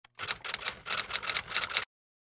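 Typewriter-style typing sound effect: a quick run of about a dozen key clicks, roughly six a second, that stops suddenly just before the end.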